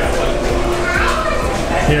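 Children's voices and background chatter from other people in the room.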